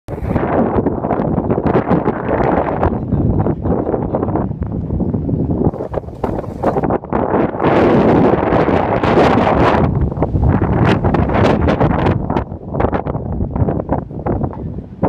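Wind buffeting a phone's microphone, loud and uneven with rapid gusts, strongest about halfway through.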